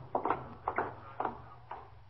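Footsteps of a group of men marching away on the command 'forward, march': a string of steps about half a second apart that fade as they go.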